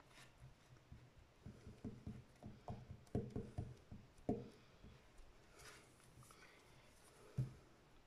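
Faint, irregular low taps and rubbing of a clear stamp on an acrylic block being pressed and worked onto paper over a cutting mat, bunched in the middle, with one sharper knock near the end.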